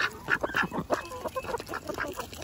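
Domestic ducks snatching dried black soldier fly larvae from a bare palm: a quick, irregular run of bill clicks and snaps, with a few soft quacks.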